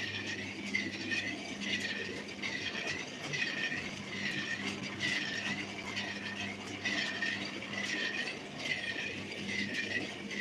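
A rhythmic mechanical squeak repeating about three times every two seconds, each squeak dipping and rising in pitch, over a steady low electrical hum.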